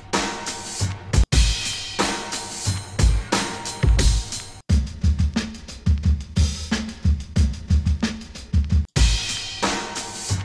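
Hip-hop drum loops played back one after another as they are auditioned, each a kick, snare and hi-hat groove. The sound cuts out briefly and a new loop starts about a second in, again near the middle, and again shortly before the end.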